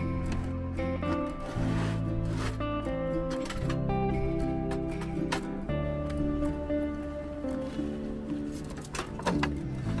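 Background music with sustained notes that change every second or so.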